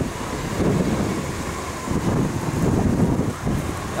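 Wind buffeting the camera microphone, an uneven low rush that swells and dips, over city street noise.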